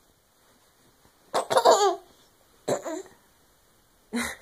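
Baby giggling: a bout of laughter about a second and a half in, then a shorter one near the three-second mark.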